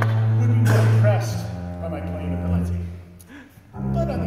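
Solo double bass playing held low notes: one note moves down to a lower note about a second in, then a short break near the end before a new note starts.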